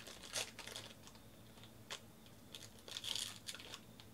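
A foil trading-card pack crinkling and tearing as it is pulled open by hand, in short faint crackly bursts, the longest about three seconds in.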